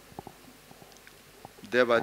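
A short pause in a man's reading into a close microphone, with a few faint clicks early on. His voice resumes near the end.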